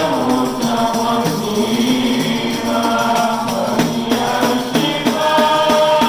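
Male voices chanting a Maulid devotional song, a lead singer with a group joining in, over a hand-held frame drum. From about halfway through, the drum is struck in a steady beat of about three strokes a second.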